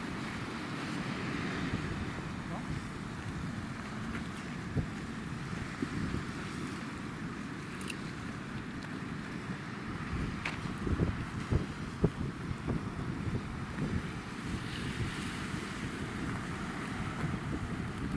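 Wind buffeting the microphone in a flickering low rumble over a steady wash of sea surf, with a few short knocks in the second half.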